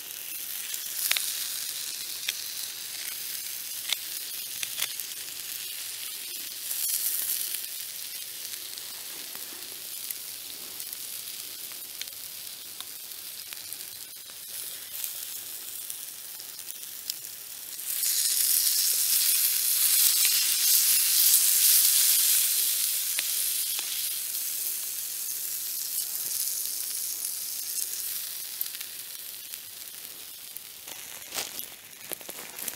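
A steak sizzling as it sears on a hot stone over campfire embers: a steady high hiss with a few sharp clicks, swelling louder a little over halfway through and then easing off.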